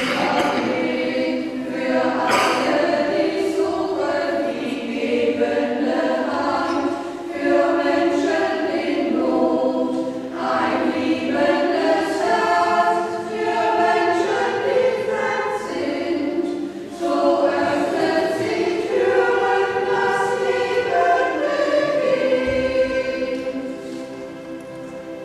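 A group of voices singing a sacred song together in a church, in phrases with short breaks between them, fading away near the end.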